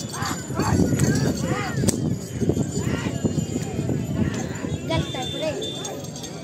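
Men shouting and whooping to drive a pair of bulls dragging a heavy stone block over a dirt track, over a steady rumble of the block, hooves and running feet.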